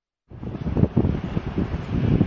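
Wind buffeting a microphone: a rough, gusting rumble that cuts in suddenly after a brief moment of dead silence.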